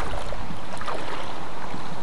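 Shallow seawater lapping and sloshing at the shore, mixed with wind on the microphone: a steady rushing noise with small splashes, nothing sudden.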